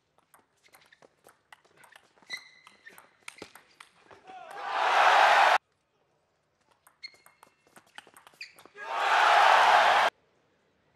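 Table tennis rallies: the ball clicking sharply back and forth off bats and table, with brief squeaks of shoes on the court floor. About four seconds in the point ends in a loud burst of crowd cheering that cuts off suddenly. A second short rally follows and ends in another loud burst of cheering near the end.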